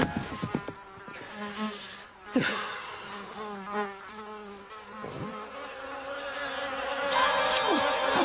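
A steady buzzing like a flying insect's, with two short downward-gliding sounds partway through; it grows louder near the end.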